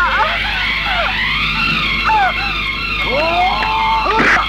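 A woman crying out in distress, her voice sliding up and down in pitch, with one long rising cry near the end.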